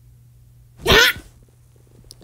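A person shouting 'Yeah!' once in a put-on demon voice: a short, rough, raspy scream about half a second long, coming about a second in.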